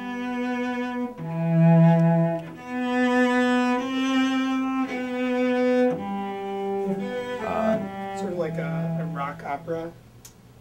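Cello bowed in a slow line of held notes, each lasting about a second or more, stopping suddenly at the end.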